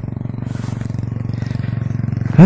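A small engine running steadily at idle, a low even hum with rapid regular firing pulses.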